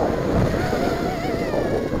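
Racing quadcopter's brushless motors and tri-blade propellers whining as it comes down, the pitch wavering and dipping slightly near the end. Wind rumbles on the microphone.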